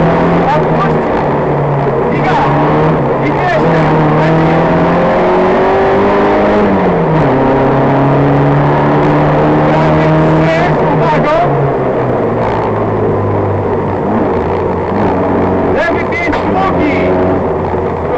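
Fiat 126p rally car's air-cooled two-cylinder engine running hard under load, heard from inside the cabin. Its pitch drops twice, about seven seconds in and again about twelve seconds in.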